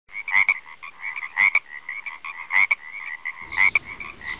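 Frog calls: a run of short, rapid chirps with a louder clicking call about once a second. Near the end, room noise joins in underneath.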